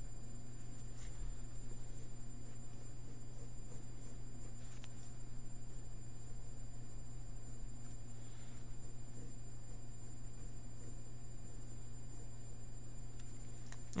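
Faint pen strokes on paper over a steady low hum.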